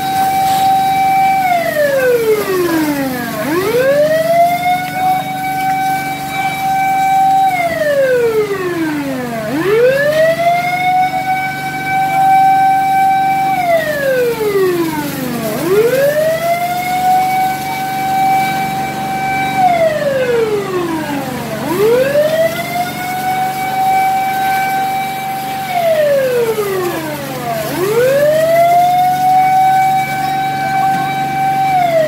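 Fire truck siren in a slow wail: the pitch sweeps quickly up to a held high tone, holds for about three seconds, then slides down, repeating about every six seconds, five times over. A steady low hum runs underneath.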